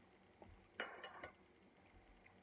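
Near silence: room tone with a few faint clicks and small clinks, one about half a second in and a short cluster around a second in.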